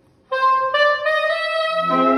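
Saxophone quartet: after a brief pause, one saxophone plays a rising line of notes alone, and the lower saxophones come in beneath it near the end.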